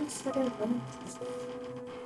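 A door creaking on its hinges as it is opened, with a long held squeak in the second half.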